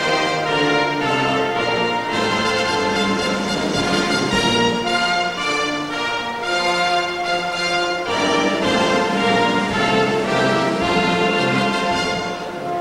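A national anthem played by an orchestra with brass, in slow sustained chords at a steady level.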